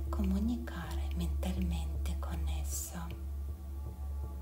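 A woman's voice speaking softly and indistinctly, over a steady low hum.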